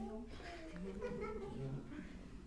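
A man's voice speaking Khmer into a microphone, a sermon delivered in short, pitched phrases.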